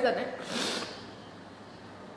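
A woman's voice trails off, then one short, sharp breath through the nose about half a second in, followed by quiet room tone.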